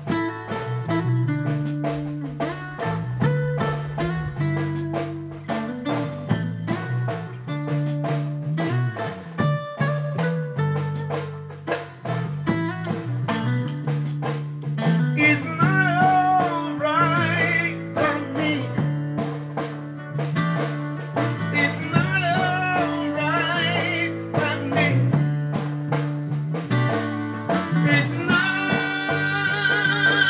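A band playing a slow blues-soul groove on acoustic guitar, electric bass and drum kit, with a steady beat. Singing with a wavering vibrato comes in about halfway through and swells near the end.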